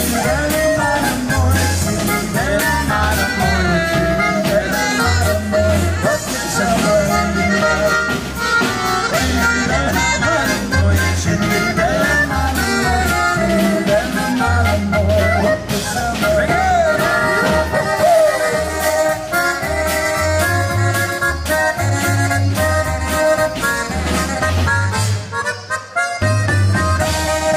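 Live polka music: drum kits keep a steady beat under a free-reed melody line and a pulsing bass.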